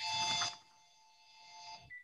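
An electronic alert tone made of several steady pitches sounded together. It starts suddenly, is loudest for about half a second, then fades away over the next second and a half.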